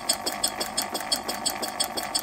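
Scale model Corliss steam engine running, its valve gear and rods clicking in a steady, even rhythm of about six or seven beats a second.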